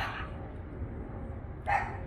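A dog barking twice, once at the start and once near the end, over a steady low background rumble.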